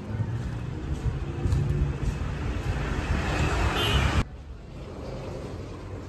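Street traffic: a motor vehicle growing louder over about four seconds, cut off abruptly. Then a quieter steady background.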